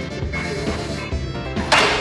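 Background music with a steady beat, and a short, loud burst of noise near the end.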